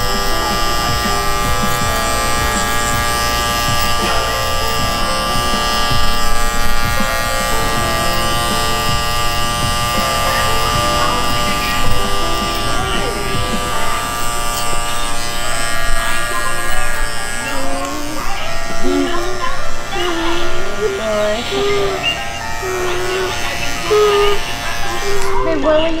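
Cordless electric hair clippers buzzing steadily as they trim a toddler's hair close around the ear. From a little past halfway, a toddler's fussing voice rises and falls over the hum, as he starts to get irritated.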